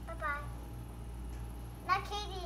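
A young child's high-pitched voice: one brief falling call about a quarter second in, then another utterance starting sharply near the end.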